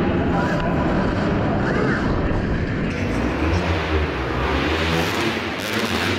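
Dirt bike being ridden over a dirt arenacross track, heard from an onboard camera: steady drivetrain noise and rushing air with a low rumble.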